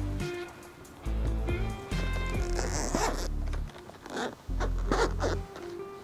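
Zipper on a carry case being pulled open in several short strokes, over background music.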